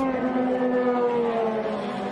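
Several IndyCar 2.2-litre twin-turbo V6 engines running as the cars pass, a drone of stacked tones sliding slowly down in pitch as the field slows for the caution.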